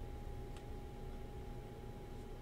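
Trading cards flipped through by hand over quiet room noise: a soft tick about half a second in, with a low hum and a faint steady tone behind it.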